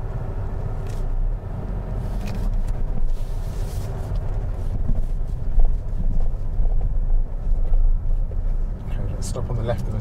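Inside a Mercedes-Benz car cabin while it drives: a steady low rumble of engine and road noise. A voice begins near the end.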